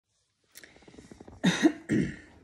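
A woman coughs, two short loud bursts in the second half, after a stretch of faint clicking.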